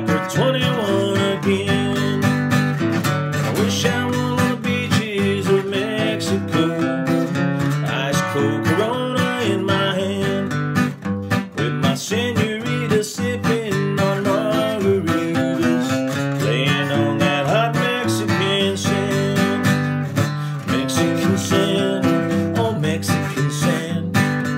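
Acoustic guitar strummed steadily, with a man singing a country song over it.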